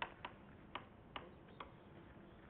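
Faint, irregular clicks of a pen stylus tapping on a Promethean interactive whiteboard while writing, about five in two seconds.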